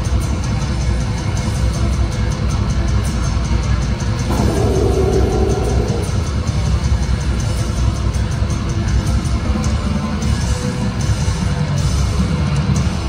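Death metal band playing live and loud: distorted electric guitars, bass and drums in a dense, continuous wall of sound, with quick even drum strokes throughout and a held guitar note a few seconds in.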